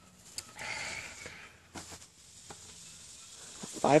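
Quiet ambient background with a brief soft hiss about half a second in and a few faint light clicks; a man's voice starts right at the end.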